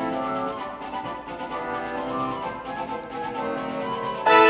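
Orchestral minus-one backing track playing its instrumental introduction, with sustained chords and no singing yet.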